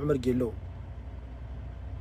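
Steady low hum of a vehicle's engine running, heard inside the cab, after a man's voice stops about half a second in.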